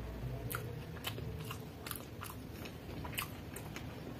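Close-miked chewing of a mouthful of chow mein noodles, with irregular sharp mouth clicks every half second or so.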